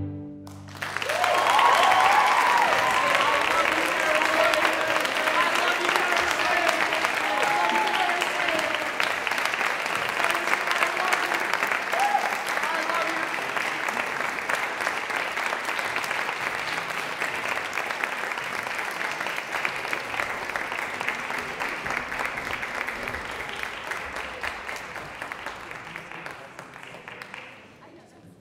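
A string quintet's last chord cuts off right at the start. Then audience applause breaks out, with cheering voices over the clapping for the first dozen seconds, and the applause slowly dies down.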